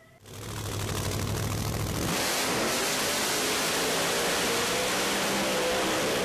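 An engine running with a low rumble, then about two seconds in revving up and holding at high revs.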